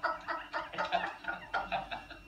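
A man laughing in quick, repeated cackling bursts, about five a second, that die away at the end.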